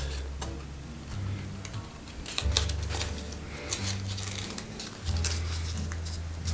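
Stiff acrylic-painted printing paper crackling and rustling in the hands as it is creased into a mountain fold, with short clicks throughout. Soft background music with sustained low notes plays underneath.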